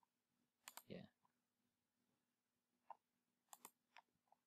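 Faint computer mouse clicks: a quick pair about a second in, a single click near three seconds, and another quick pair near the end, over a faint steady hum.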